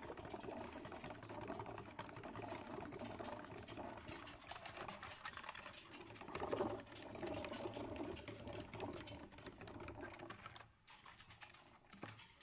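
Degus running in their exercise wheel, which gives a fast, steady rattle that drops away for a moment near the end.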